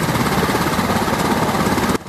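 Black Hawk helicopter running on the ground: its twin turbine engines and rotor make a loud, steady noise with a fast pulsing beat.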